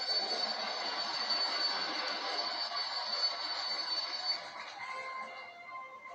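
Fire alarm bell ringing steadily, heard from a TV's speaker through a phone's microphone; it cuts off about four and a half seconds in, leaving a few held notes of music.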